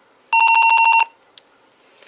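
Motorola MTS2000 handheld radio sounding a short, rapidly pulsed electronic beep from its speaker, lasting under a second, as it is switched off at the on/off knob. A small click comes a little after the beep.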